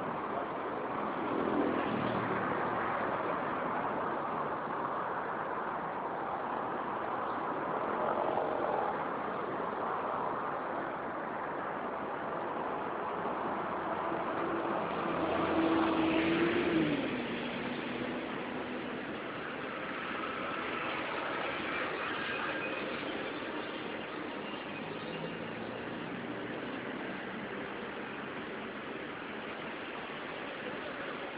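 City street traffic: a steady wash of road noise from passing cars. About halfway through it swells, with a brief held tone that drops in pitch.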